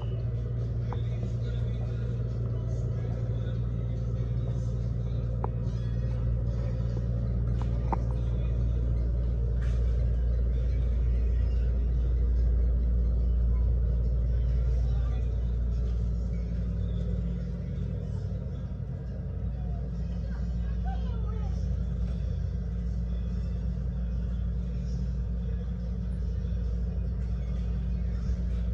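Small child-size shopping carts rolling along a supermarket floor: a steady low rumble.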